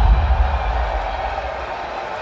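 Deep rumble from a theatre sound system, fading over the first second or so, over a steady noisy wash that carries on.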